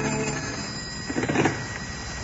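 The tail of an orchestral music cue fades out, then a telephone bell rings once, briefly, a little over a second in: an incoming call.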